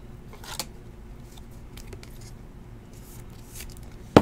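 Trading cards being handled and laid down on a playmat: a few faint, short rustles and slides of card stock over a low steady hum.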